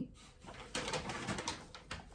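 A brown kraft-paper carrier bag being picked up and handled, its stiff paper rustling and crinkling.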